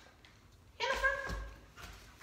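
A dog gives one short, sharp bark about a second in.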